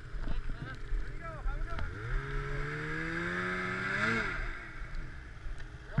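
Snowmobile engine revving up, its pitch climbing steadily for about two seconds before it drops away suddenly about four seconds in.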